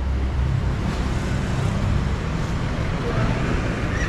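Street traffic: vehicle engines running and passing close by, a steady rumble with road noise.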